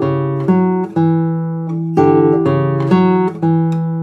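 Nylon-string classical guitar playing a slow D-major passage: plucked notes and chords that ring on, a new one about every half second, with one held for about a second in the middle. It is played with a barre under the third finger, an odd fingering chosen to keep the upper voice sustaining.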